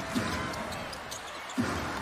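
Basketball bouncing on the hardwood court over the steady noise of an arena crowd during live play, with a louder knock about one and a half seconds in.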